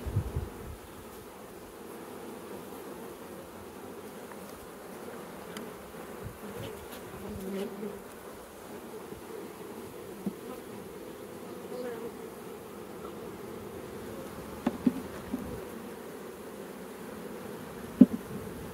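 Honeybees humming steadily from an open, crowded nuc colony as frames covered in bees are lifted out. A couple of light taps sound about three quarters of the way through.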